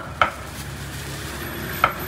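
Meat cleaver chopping pork on a thick wooden chopping board: one stroke just after the start and another near the end, each a sharp knock with a short ring from the blade, over a steady background hiss.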